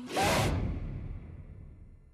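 A loud trailer whoosh-and-hit sound effect at the start, fading out over about two seconds.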